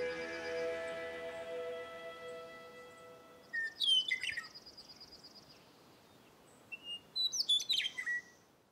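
Soft background music fading out over the first three seconds, then a bird calling: a cluster of quick downslurred chirps about three and a half seconds in and another near the end, with a faint rapid high trill between.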